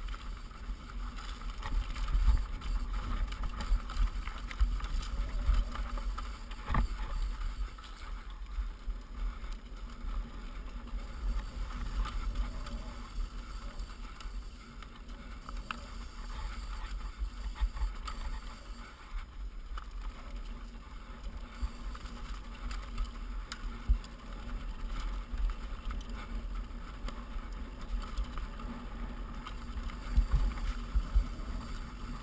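Mountain bike descending a steep, rocky trail: tyres rolling over loose rock with scattered clicks and rattles from the bike, and a sharper knock about seven seconds in. A continuous low rumble of wind and buffeting on the camera's microphone runs underneath.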